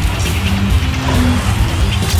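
Sports-show title theme music with a heavy, steady bass and sweeping whoosh effects.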